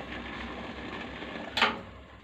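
A cooking stove under a steamer pot running with a steady noise, then switched off with a short click about one and a half seconds in, after which it goes quieter.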